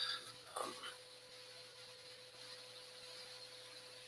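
A man's brief hesitant "um", then faint room tone with a thin, steady electrical hum.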